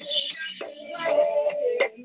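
Live band rehearsal recording, with a vocalist singing held notes over guitars and drums, played back over a video call. Near the end the sound briefly thins out.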